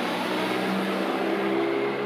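A motor vehicle's engine running close by with a steady hum, over a wash of street noise.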